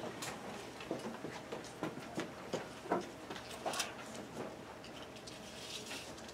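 Irregular light clicks and knocks as a retractable tape measure is pulled out and stretched across the room.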